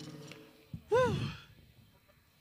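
A short, high-pitched vocal sound from a person, a brief sigh-like "ooh" that rises and then falls in pitch about a second in, after the end of a held voiced note dies away.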